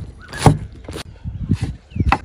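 Cleaver chopping pickled vegetable stems on a wooden chopping board: one heavy chop about half a second in, then a quick run of lighter chops.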